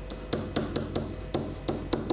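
Felt-tip marker writing on a whiteboard: a quick, irregular run of sharp taps and short scrapes as the pen strikes and drags across the board, forming letters.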